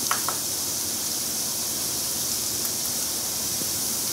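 Onion and garlic frying in hot oil in a nonstick pan, a steady sizzling hiss. There are two faint clicks just after the start.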